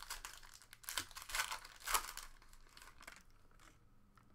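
Foil trading-card pack wrapper crinkling as it is torn open. There are several sharp crackles over the first two seconds, then it fades to quieter handling.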